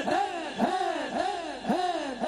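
A man's voice through a microphone chanting one short cry over and over, about two a second, each cry rising and then falling in pitch.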